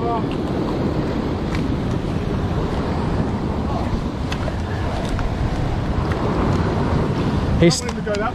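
Ocean surf washing over a rock ledge, with wind buffeting the microphone: a steady rushing noise.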